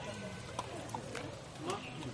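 Faint voices and a brief laugh, with a few sharp light clicks of a husky puppy eating from a steel bowl in its wire cage.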